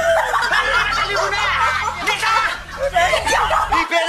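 Laughter: several voices snickering and chuckling without a break, over a low steady hum that stops near the end.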